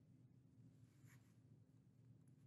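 Near silence with the faint scratch of a stylus drawing a line on a tablet screen, one slightly stronger stroke about a second in.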